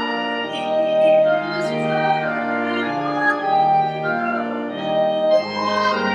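Church organ playing a hymn in sustained, full chords that change about once a second.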